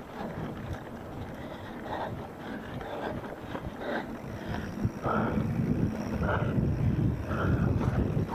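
Wind buffeting the microphone of a camera riding on a mountain bike, over the rumble and clatter of tyres rolling down a dirt singletrack trail. It gets louder about five seconds in.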